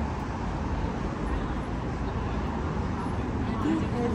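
Steady traffic noise of cars passing on a city street, with people's voices starting near the end.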